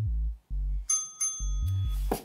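Background music with a repeating bass line; about a second in, a bright bell-like ding from a workout timer rings out and sustains, marking the end of the timed plank interval.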